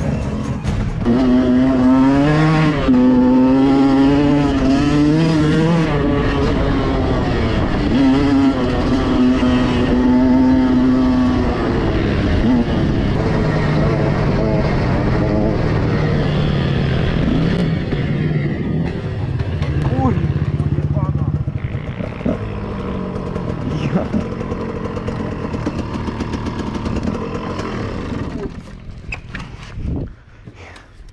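Off-road motorcycle engine running under way and revving, its pitch rising and falling unevenly for the first dozen seconds, then steadier. It drops away sharply in the last couple of seconds.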